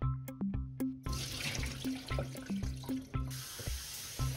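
Kitchen tap running water onto sea grapes in a stainless mesh strainer in the sink, starting about a second in, over background music with a steady beat.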